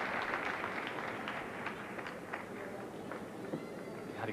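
Arena audience applauding, with scattered claps in a steady crowd noise that slowly dies down.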